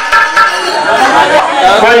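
A man speaking into a handheld microphone, his voice loud and amplified over the stage sound system.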